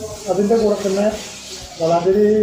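Only speech: a man talking, pausing briefly a little past the middle, over a faint steady hiss.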